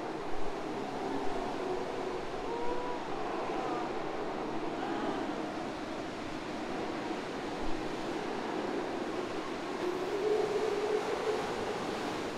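Surf surging through a sea cave, a steady rush of churning water. Over it, faint calls of sea lions on the rocks waver up and down, around three seconds in and again near the end.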